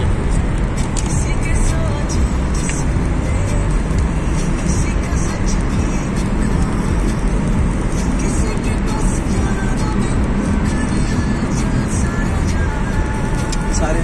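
Music playing over the steady road and engine rumble inside a moving car's cabin.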